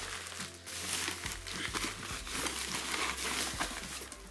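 Plastic bubble-wrap packaging crinkling and crackling as it is handled.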